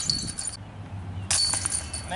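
Metal chains of a disc golf basket jingling, in two bursts: the first stops abruptly about half a second in, and the second starts suddenly past halfway.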